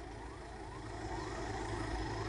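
A siren in the background, its pitch sweeping up again and again about three times a second, over a low steady hum.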